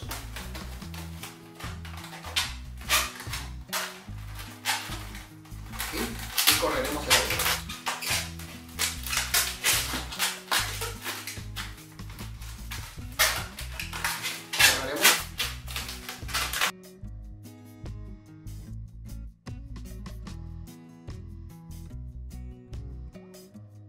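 Latex twisting balloons squeaking and rubbing in the hands as they are twisted, in quick irregular strokes, over background music with a steady bass line. The balloon noise stops abruptly about three-quarters of the way through, leaving only the music.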